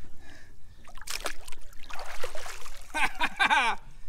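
Shallow river water splashing as a shovel is slapped down at fish, with a sudden splash about a second in. A person's voice calls out near the end.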